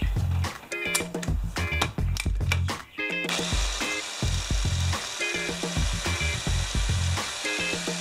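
Electric mini chopper (bowl blender) running steadily from about three seconds in, chopping boiled cauliflower, over background music with a steady beat.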